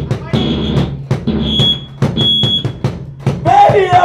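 Live rock band playing an instrumental passage: the drum kit keeps a fast, steady beat over a bass line, with a thin high sustained tone sounding three times in short spells. A voice comes in near the end.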